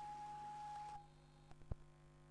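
A steady single-pitched beep tone over a faint hiss, which cuts off about a second in. A sharp click follows near the end.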